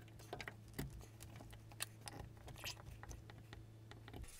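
Faint scattered clicks and light taps of a small wooden strip being pressed and seated into a window sash by hand, over a steady low hum.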